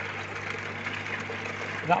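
Steady electric hum of the koi pond's filter pumps running, with a constant low drone and a wash of water noise.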